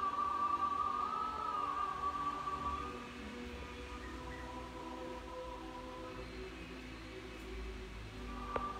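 Orthodox liturgical chant: voices holding long, steady notes, a strong high note for about the first three seconds, then softer, lower held notes.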